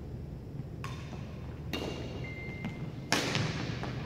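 Badminton rally: a racket hits the shuttlecock three times about a second apart, the last hit the loudest, each echoing in the gym hall. A thin high squeak sounds for just under a second before the last hit.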